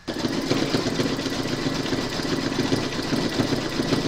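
Computerised embroidery machine stitching out a design in the hoop: a steady run of rapid, even needle strokes that starts and stops abruptly.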